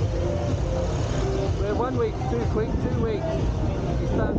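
Steady low rumble of a motorbike ride, engine and road noise, with a person's voice speaking briefly over it from about halfway through.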